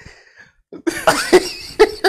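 A man laughing in several short, hearty bursts, starting about a second in after a brief silent gap.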